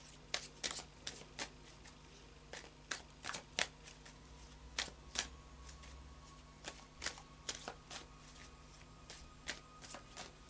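A tarot deck being shuffled by hand: a run of irregular sharp card slaps and clicks, some in quick clusters.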